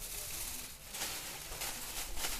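Plastic bags and a paper kite being handled, a soft, continuous crinkling rustle with a few slightly louder crackles.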